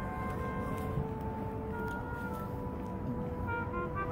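A street trumpeter playing a slow tune in long held notes, over a low rumble of city background noise.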